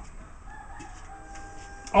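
A rooster crowing faintly, one long held call lasting well over a second.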